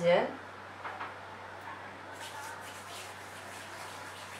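Faint handling sounds of dried thyme taken from a small plastic tub and sprinkled over minced meat: a light click about a second in and a soft rustle a little after two seconds, over a low steady hum.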